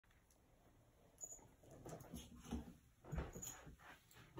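Faint footsteps on a floor: a few soft, irregular thuds that get louder from about two seconds in as someone walks up.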